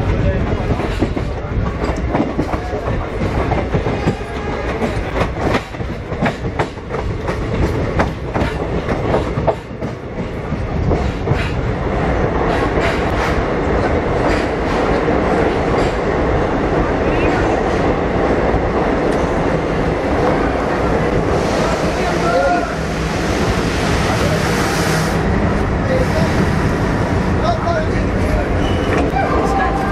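Moving passenger train heard from an open coach door. The wheels clatter rapidly over rail joints for about the first ten seconds, then settle into a steadier rolling rumble.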